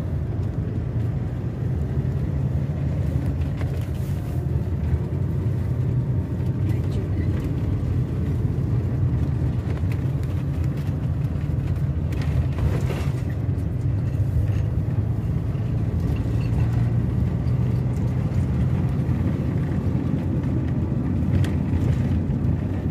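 Steady low engine and road rumble inside a moving motorhome's cab.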